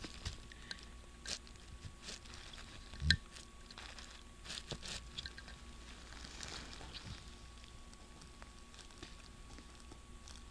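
Faint handling sounds from gloved hands working an end plug into a tight-fitting bore in a Honda automatic transmission valve body: scattered small clicks and rustles, with one low knock about three seconds in.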